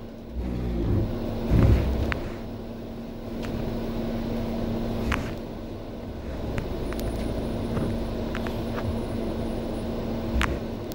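Interior sound of a MAN A91 bus on the move: the MAN D2066 Euro 4 diesel engine and Voith DIWA automatic driveline give a steady low rumble with a constant hum. A couple of heavier thumps in the first two seconds, and scattered rattles and clicks from the bus body.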